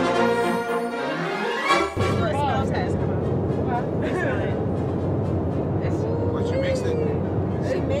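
A short music transition that fills about the first two seconds and ends abruptly, then the steady low drone of a private jet's cabin under several people talking at once.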